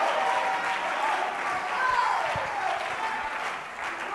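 Congregation applauding, with a few voices calling out over the clapping; the applause gradually dies down.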